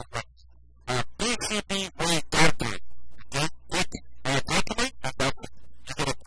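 A voice in short, rapid syllables over a low steady hum, not picked up as clear words.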